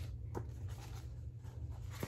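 Sheets of printed paper being handled and flipped, with one short tap about a third of a second in, over a steady low hum.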